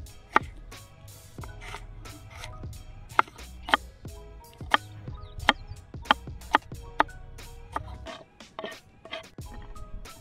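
Chef's knife slicing a red onion on a wooden chopping board: a dozen or so sharp knocks of the blade meeting the wood, irregularly spaced and closest together in the middle, over background music.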